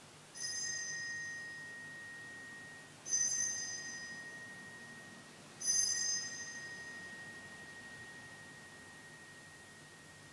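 Altar bell rung three times at the elevation during the consecration of the Mass. Each strike gives a bright, quickly fading shimmer over a lower tone that keeps ringing into the next strike.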